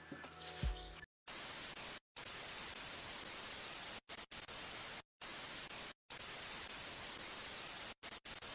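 Television static sound effect: a steady hiss of white noise that starts about a second in and is broken by about five short gaps of silence.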